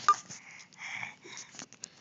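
Handling noise of a phone being fumbled with in the hand: soft rustling and a few light clicks, with one short high tone right at the start.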